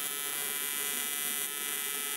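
AC TIG welding arc from an Everlast PowerPro 205Si buzzing steadily on 16-gauge aluminum, at no more than about 80 amps with the balance set to 70% electrode-negative and 30% cleaning. The buzz is even throughout, the sign of a stable arc.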